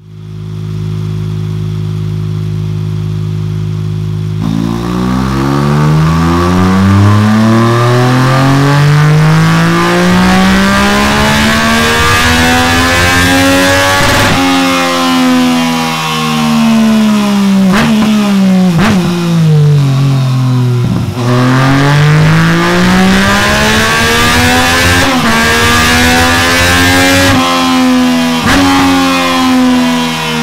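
Yamaha MT-09's three-cylinder engine through a Delkevic DL10 carbon-fibre silencer and de-cat full exhaust, run up on a dyno. It idles steadily for about four seconds, then the revs climb in a long smooth rise, fall away, and climb again, with a few sharp cracks along the way.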